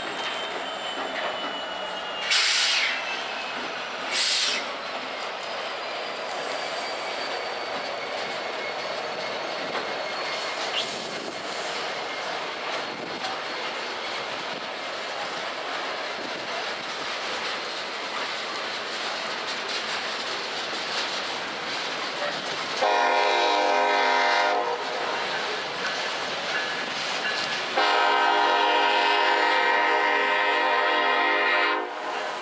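Freight train rolling past, its wheels clattering over the rail joints, with two short hissing bursts a few seconds in. About three quarters of the way through, a diesel locomotive's air horn sounds one long blast and, after a short gap, a second blast that keeps going.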